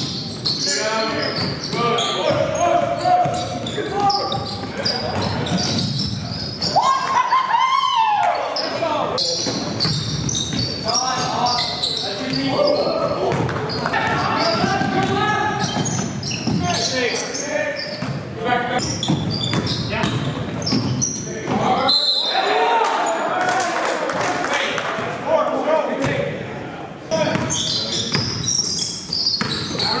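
A basketball being dribbled and bouncing on a hardwood gym floor during full-court play, with players' shouts mixed in, echoing in a large gym.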